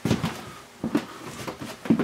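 A foot pressing and stepping on a camper's floor beside the toilet, testing for soft spots: three dull thumps about a second apart. The floor is firm, with no soft spots.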